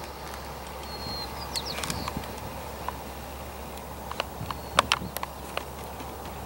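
Irregular sharp clacks of a passing Amtrak California bilevel passenger train's wheels running over rail joints and switches, in two loose clusters, over a low steady hum.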